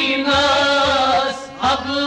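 Kashmiri song: a male voice sings a held, wavering melodic line over a steady drum beat and accompanying instruments.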